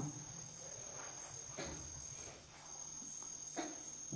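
Faint, steady high-pitched trilling of crickets, dropping out briefly a little after two seconds in, over a low room hum.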